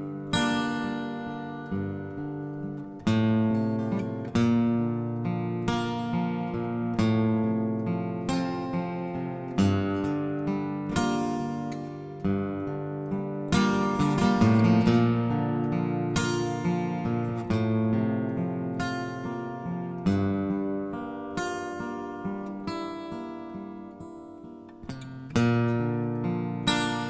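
Acoustic guitar playing chords alone, struck about once a second, each chord ringing and fading before the next.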